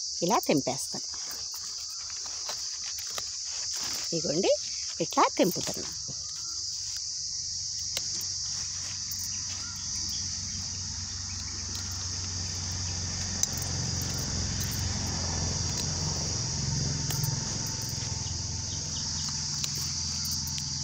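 A steady, high-pitched insect chorus, with a low rumble joining in during the second half.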